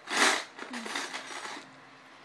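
Loose Lego bricks clattering as a hand rummages through a plastic bin of pieces: a loud rattling rush at the start, then lighter clicks and rattles that die away in the second half.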